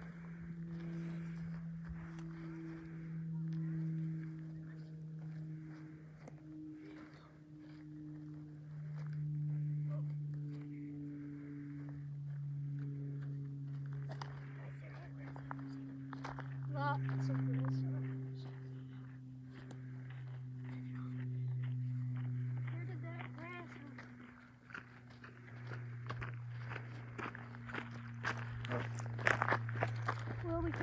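Footsteps running and scuffing over dry grass and dirt while chasing grasshoppers. Under them runs a steady low hum that sinks slowly in pitch.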